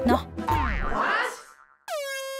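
Cartoon 'boing' sound effect: a springy rising glide about half a second in that fades away, over background music. A new held tone cuts in sharply right at the end.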